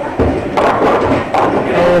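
Bowling ball rolling down a wooden lane and crashing into the pins, a noisy clatter with several sharp knocks, leaving the 2 and 7 pins standing. Crowd chatter and the rumble of other lanes in a bowling alley's echoing hall.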